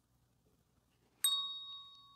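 A single bright chime, sounded about a second in, ringing with several clear high tones that fade slowly. It marks the end of a timed hold in a yin yoga pose.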